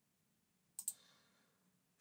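Near silence broken by one short click, two quick ticks close together, a little under a second in, as of a computer key or mouse button pressed and released.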